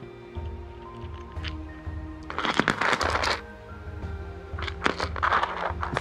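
Background music with a steady beat. Twice, about two and a half and five seconds in, a second-long clatter of many small clicks as loose pieces of Baltic amber are handled and knock together on a tray.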